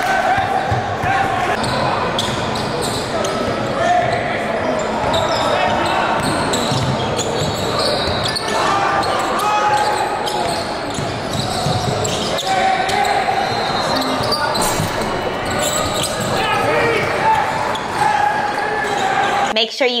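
Live basketball game sound in a gym: a ball dribbled and bouncing on a hardwood court amid the echoing chatter of players and spectators in a large hall. The game sound cuts off suddenly near the end.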